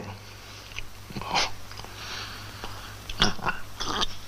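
A man sipping wine from a glass: a few short, breathy mouth and breath sounds about a second in and again near the end, over a steady low hum.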